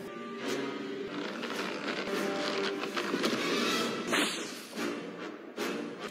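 Film soundtrack music with steady held tones, broken by scattered short sharp sounds and a brief noisy burst about four seconds in.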